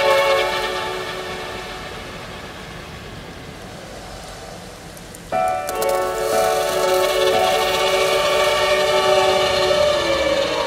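String ensemble of violins, violas, cellos and double basses playing long held chords. The first chord fades away over about five seconds, then a louder new chord enters sharply about halfway through and is held.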